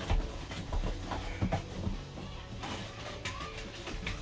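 Scattered light knocks and clatter of plastic slot-car track and toys being handled and moved about, at irregular moments.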